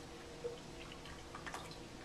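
Ink dripping and trickling from a large calligraphy brush back into a plastic cup of ink as the brush is worked and lifted out. A short faint tone sounds about half a second in, and a few small clicks come just past a second and a half.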